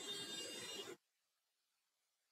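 Faint background room noise and microphone hiss, which cuts off to complete silence about a second in.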